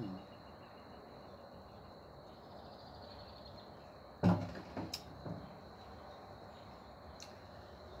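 A ceramic coffee mug set down on a hard surface with a single knock about four seconds in, followed by a few small clicks, over a faint steady background.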